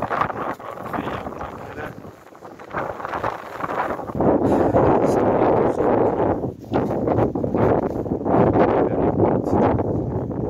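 Wind buffeting the microphone in an irregular rush of noise, growing much louder about four seconds in.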